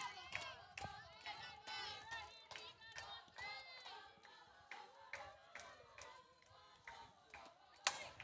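Faint, distant high voices chanting and cheering, with scattered handclaps. Just before the end comes a sharp crack of a bat hitting the softball.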